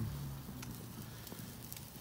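Faint, scattered crackles and pops of a red oak wood fire burning under a grill grate.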